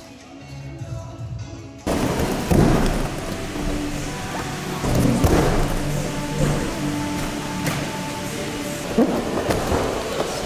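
Background music, then about two seconds in a loud rushing noise comes in, with several heavy thuds of a tricker taking off and landing on gym mats.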